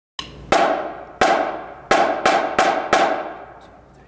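Two drumsticks clicked together in a count-off: two strikes, then four quicker ones, each with a short ring.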